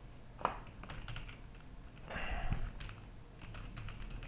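Typing on a computer keyboard, a word deleted and another typed: scattered soft key presses, with one sharper click about half a second in.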